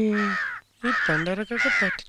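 A crow cawing, about four short calls in quick succession.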